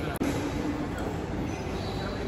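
Busy indoor shopping-arcade ambience: a steady mechanical hum under a murmur of distant voices, with a brief dropout in the sound just after the start.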